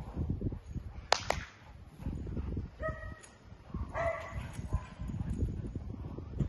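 A dog gives two short, high-pitched yelps about halfway through while tugging on a toy, over scuffling on grass. A sharp double crack comes about a second in.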